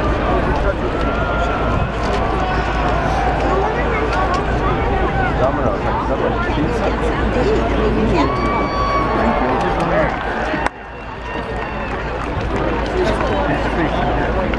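Crowd of spectators in stadium stands, many voices talking over one another in a steady babble. It breaks off suddenly about three-quarters of the way through and builds back up.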